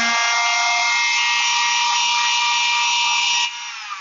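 Electric palm sander with a Scotch-Brite pad pressed under it, running at full speed on a jointer's cast iron table to polish away surface rust. It gives a loud, steady whine, is switched off about three and a half seconds in, and its whine falls away as it winds down.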